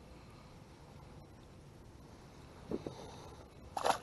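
Quiet outdoor background, then a single short splash near the end as a largemouth bass is let go back into the water beside the boat.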